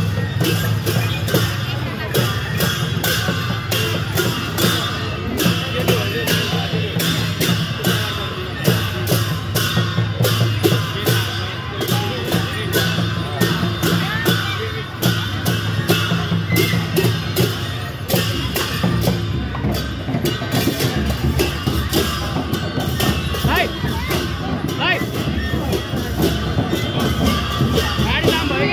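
Newar dhime barrel drums and hand cymbals playing Lakhe dance music in a fast, even beat, the cymbals clashing several times a second, with crowd chatter underneath.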